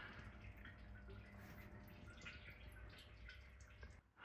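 Faint dripping and trickling of coolant draining from a Tesla Model 3's cooling system into a plastic bucket, over a low steady hum.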